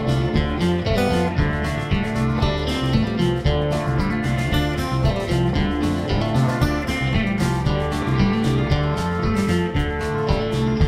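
A live folk band's instrumental break: acoustic guitars strumming over bass and drums, with a steady beat.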